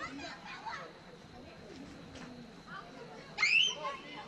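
Children's voices calling and chattering across a ball field, with one loud, high-pitched shout rising in pitch about three and a half seconds in.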